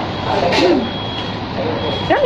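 Restaurant background of people talking, with a short, steady, high electronic beep near the end.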